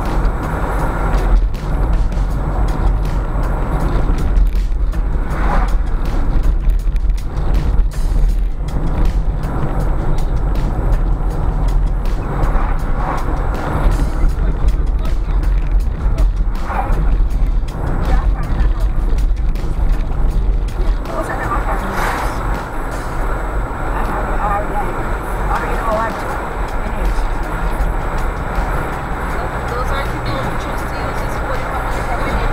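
Steady low road and engine rumble inside a moving car's cabin at around 30 mph, with music and indistinct voices behind it.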